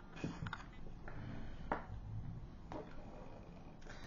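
A few faint, sharp clicks and taps as a plastic tracker frame is handled and set down onto the metal standoffs of a robot-car chassis, over quiet room tone.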